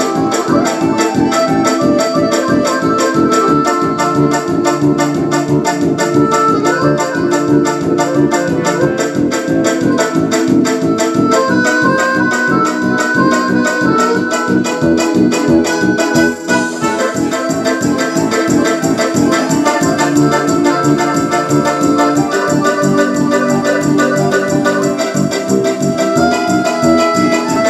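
Piano accordion playing a fast csárdás, with a steady driving beat and held reed chords and melody. The playing breaks off briefly about sixteen seconds in, then carries on.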